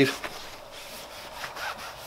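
Cloth rubbing and wiping over a metal machine table, buffing off paste wax in irregular strokes.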